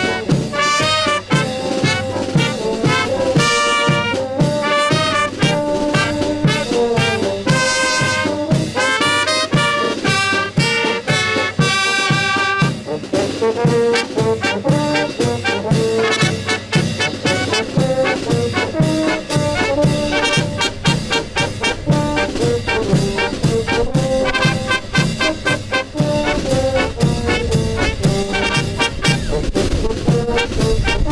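Brass band of trumpets, tenor horns, saxophone and tuba playing a lively tune with a steady beat and cymbals.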